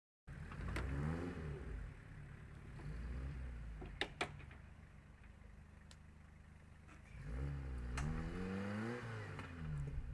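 Off-road 4x4's engine revving under load on a steep rocky climb. The revs rise about a second in and again from about seven seconds, dropping back to a low run between, and two sharp knocks come about four seconds in.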